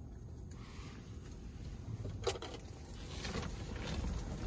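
Low, steady rumble of strong wind buffeting an ice fishing shanty, with one short knock a little over two seconds in.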